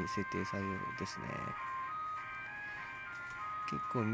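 Background music of sustained electronic tones that change pitch every second or so, with a voice briefly at the start and again near the end.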